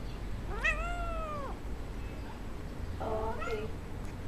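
A domestic cat meowing twice: one long meow about half a second in that rises and then slowly falls, and a shorter, wavering meow near the end.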